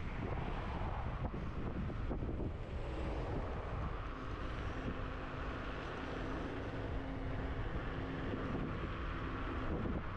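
Wind rushing over the microphone and tyres rolling on a paved path while riding an electric scooter at speed. A faint steady hum joins about four seconds in and fades near the end.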